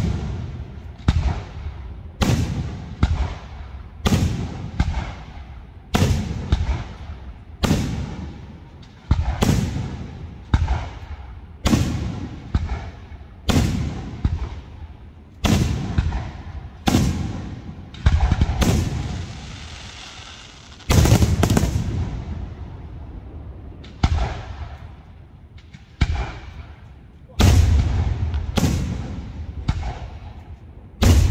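Professional aerial firework shells being fired and bursting overhead, a steady run of heavy bangs about one a second, each trailing off in echo. About two-thirds of the way through, a few seconds of hissing fill a gap between the bangs.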